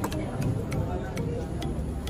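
A steady, evenly spaced ticking, a little over two ticks a second, over a low murmur of background voices.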